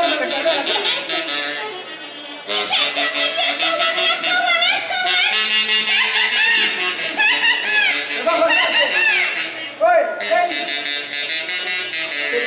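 Huaylarsh music from a live band on an amplified stage, with high voices calling out over it. The music eases briefly about two seconds in, then comes back in full.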